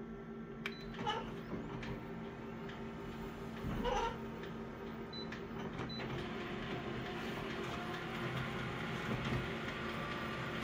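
Office colour multifunction copier scanning an original and starting the copy job: a steady machine hum with a few short high beeps from the control panel, and a denser mechanical running noise from about six seconds in.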